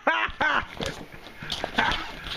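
Two short, high-pitched vocal sounds with bending pitch, followed by knocks and rustling of the camera being grabbed and moved.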